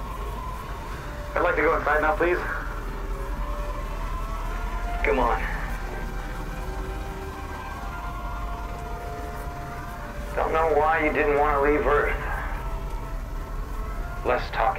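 Three short bursts of voices over a steady low rumble and long held music tones.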